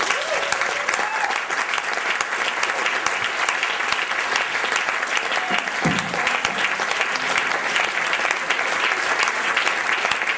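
Audience applauding after a song ends, a dense, even clapping that keeps going, with a few cheers in the first second.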